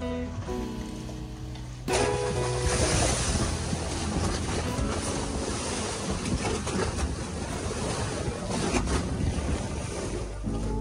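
Background music for about two seconds, then a sudden cut to loud, steady wind and sea noise, with wind buffeting the microphone.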